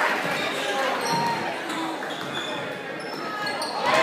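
Indoor gym sound during a basketball game: a ball bouncing on the hardwood floor, short sneaker squeaks and spectators' voices. Right at the end the crowd breaks into loud cheering.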